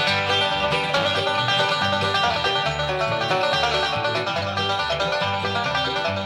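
Bluegrass band playing an instrumental passage: rapid picked banjo with guitar and a steady bass line underneath.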